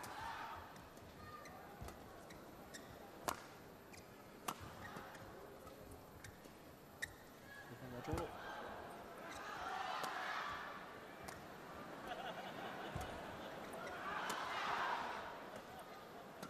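Badminton rally: rackets hitting the shuttlecock in sharp, single cracks one to a few seconds apart, over arena crowd noise that swells twice, about ten and fifteen seconds in.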